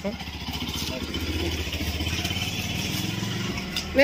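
A motorcycle engine idling steadily, a low even rumble.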